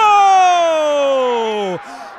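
A Brazilian football commentator's goal call: one long held shout, its pitch sliding steadily down for nearly two seconds before it breaks off near the end.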